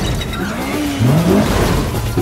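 A car engine revving in rising sweeps about halfway through, over tyre noise, with music underneath.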